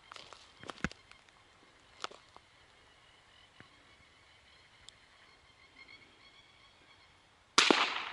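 A few faint clicks, then a single loud gunshot near the end: the shot at a rabbit, which hits.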